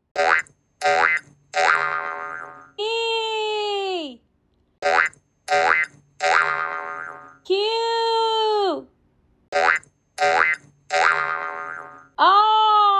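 Cartoon sound-effect sequence played three times, about every four seconds, as each new letter pops up: two quick rising zips, a springy boing that rings and fades, then a held tone that sags in pitch at its end.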